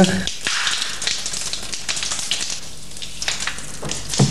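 A shower running: a steady hiss of water spray.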